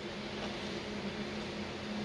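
Steady low hum with a soft hiss: room tone.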